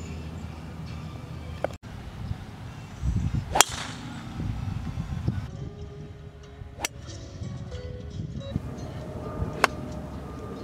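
Golf club striking the ball on a series of separate shots: four short, sharp clicks a few seconds apart, the loudest about three and a half seconds in, over a steady low rumble.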